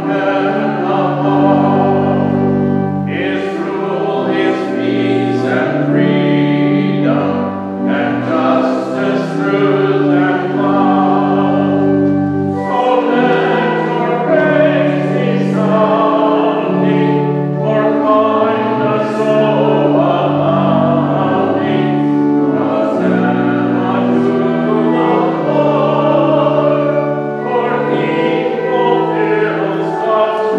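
A congregation singing a hymn together with organ accompaniment: held organ chords that change from note to note under the massed voices.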